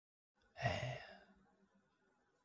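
A man's brief sigh into a close handheld microphone, about half a second in, fading away within about a second.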